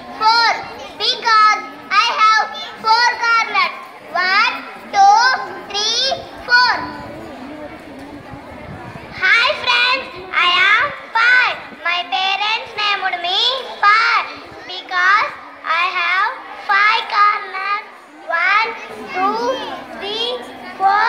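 Children's voices speaking through a microphone and loudspeaker: one child, then, after a pause of about two seconds midway, another.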